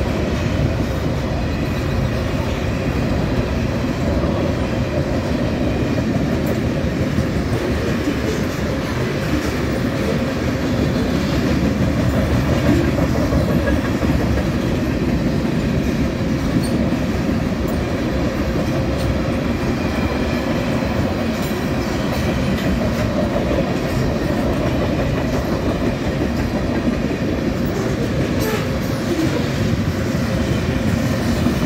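Freight train of tank cars and covered hopper cars rolling past at steady speed: a continuous rumble of steel wheels on rail with occasional clicks.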